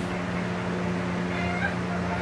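Steady electric box-fan hum, with a few short, high chirping calls from chickens in the second half.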